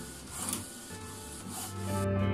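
Canon PIXMA inkjet printer at work, with short rubbing, scraping passes of the paper feed and print head.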